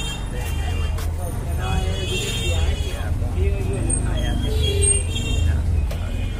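Busy market-street background: people's voices and passing traffic over a steady low rumble.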